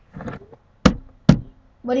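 Two sharp knocks about half a second apart, close to the microphone.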